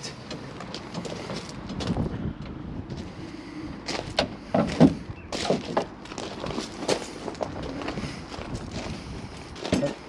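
A crank handle winding a motorhome's rear corner steady, with irregular metal clicks and knocks. Footsteps crunch on gravel near the end.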